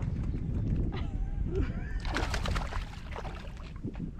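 A hooked black bass thrashing and splashing at the water's surface beside the boat, with a quick run of splashes about two seconds in. Wind rumbles on the microphone throughout, and faint voices are heard.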